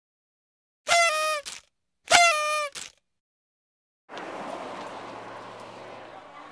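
Two short horn-like tones, each under a second long and sagging slightly in pitch, sounded about a second apart. From about four seconds in comes a steady rushing noise of outdoor road ambience.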